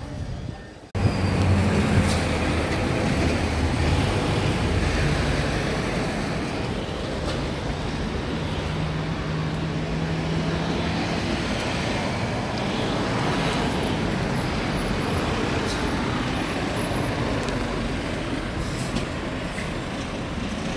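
Road traffic with heavy lorries and cars passing: tyre noise and low engine drone, which comes in suddenly about a second in and is heaviest over the next few seconds.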